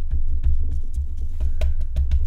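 A Distress ink pad dabbed repeatedly onto a rubber stamp on a craft mat, making a run of dull, low thumps with a few light clicks.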